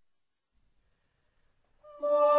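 Near silence. Faint held notes of a sung vocal fugue begin just before the end.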